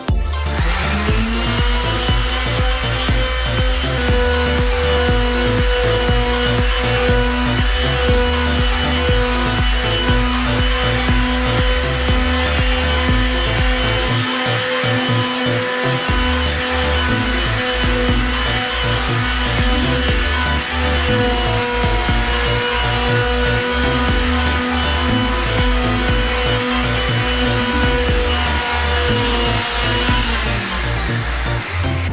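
Electric palm sander starting up in the first second, running steadily as it sands a headlamp's plastic lens, and winding down at the very end. Background music with a beat plays underneath.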